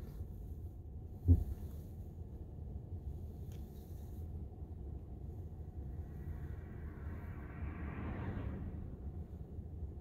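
Low, steady cabin rumble inside a Tesla electric car creeping to a stop in traffic, with one short low thump about a second and a half in. A faint hiss rises and fades from about six to eight seconds in.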